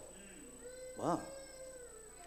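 A pause in a man's amplified speech: about a second in he says one short, soft 'wow' that rises and falls in pitch, over a faint held tone.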